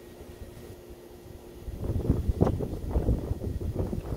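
Wind buffeting the microphone: a low, uneven rumble that grows louder about two seconds in.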